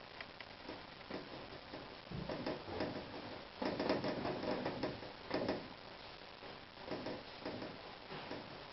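Paintbrush dabbing and stroking oil paint on canvas, in irregular scrubbing bursts that are loudest in the middle of the stretch.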